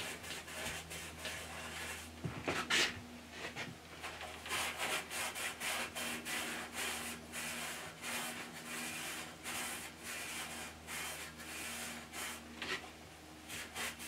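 Abrasive scratch pad scrubbing the inside of a cast iron lathe headstock bore, quick back-and-forth rubbing strokes repeating a few times a second, with one sharper scrape a little under three seconds in.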